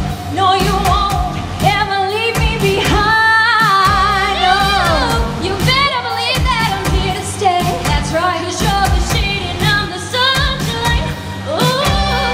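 Two women singing a pop duet through handheld microphones, trading and overlapping sung lines, over band backing music with a steady drum beat.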